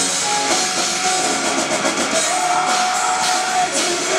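Melodic death metal band playing live at full volume: distorted guitars, bass, keyboard and drums with crashing cymbals, and a held high note from about two seconds in to near the end.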